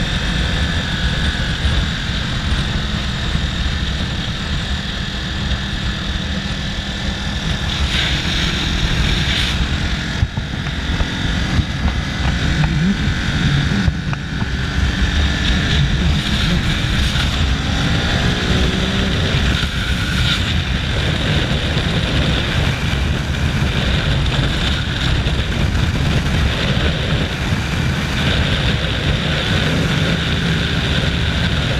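Ducati sport bike's engine running hard at freeway speed under a steady rush of wind noise. Its pitch rises and falls around the middle as the rider works the throttle.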